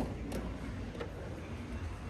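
Car boot being opened: a sharp click of the latch about a third of a second in, and a fainter click about a second in, over a steady low background rumble.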